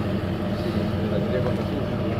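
A steady low hum of a running engine, with faint voices in the background.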